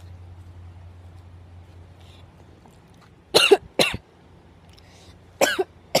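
A boy coughing: two quick coughs about three and a half seconds in, then two more near the end.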